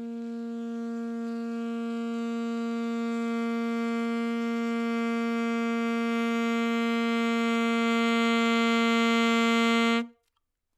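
A saxophone holds one long steady note that swells from soft to loud. It starts as a nearly pure tone and grows brighter and reedier as more and more upper harmonics come in. The note stops abruptly at the very end.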